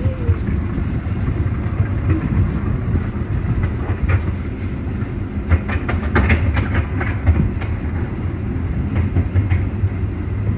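Strong gusty wind buffeting the microphone: a loud low rumble that swells and falls, with scattered crackles.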